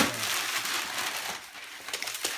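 Gift-wrapping paper being crumpled and rustled after a sharp knock at the start, the rustling dying away after about a second and a half.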